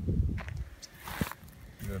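Dry brush and twigs rustling and crackling, with a brief crunch about a second in. A man's voice starts right at the end.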